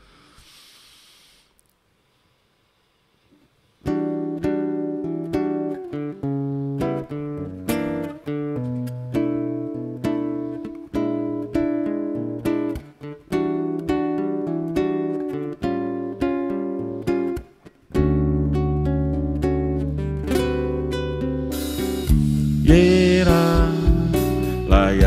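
A live band starting a song: after a few seconds of near silence, a guitar begins a rhythmic chordal intro, bass guitar joins about eighteen seconds in, and drums with cymbals come in near the end.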